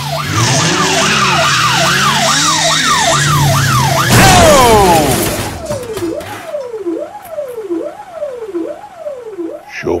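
Electronic siren yelping fast over a loud rushing noise. About four seconds in there is a loud burst of noise, and then the siren slows to a steady wail, rising and falling about once a second, growing fainter.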